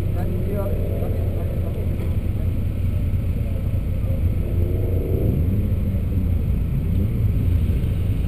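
EK9 Honda Civic's engine idling with a steady low rumble while the car waits at the start, with faint voices murmuring behind it.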